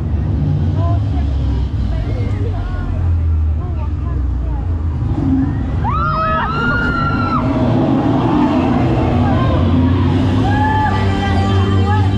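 Riders' voices on a drop-tower ride over a steady low rumble of wind on the microphone. About six seconds in there is a cluster of high, sharply rising screams, and after that a fuller, slightly louder rushing noise as the ride comes down.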